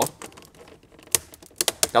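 A few sharp clicks and taps from a hand working at the homemade centre console of a VAZ-2107: one click about a second in, then a quick run of three or four near the end.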